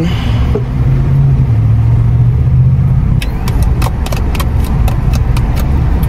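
Car engine idling, heard from inside the cabin as a steady low hum. In the second half comes a run of light, quick clicks.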